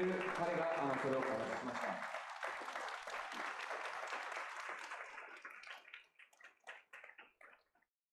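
Audience applause, thinning after about five seconds into a few scattered claps that die away near the end.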